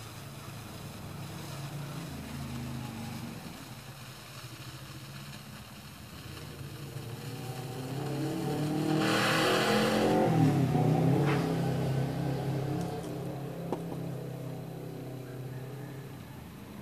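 A motor engine running, its pitch wavering, growing louder to a peak about ten seconds in and then fading, as a passing vehicle does. A brief hiss comes about nine seconds in.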